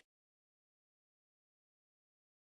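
Silence: the audio track is empty, with no sound at all.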